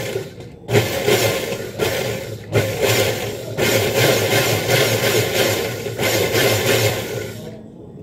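Hanabishi Super Blender motor running at speed, whirring through kiwi, water, calamansi and sugar to crush the fruit into juice. After a brief dip it runs steadily for about seven seconds, then cuts off shortly before the end.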